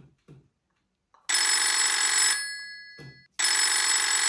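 Mobile phone ringing: two rings about a second long each, two seconds apart.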